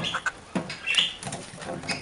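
Small pet birds (cockatiel and budgie) moving about on a deer antler: a sharp click at the start, light clicks and scratches, and a short high chirp about halfway through.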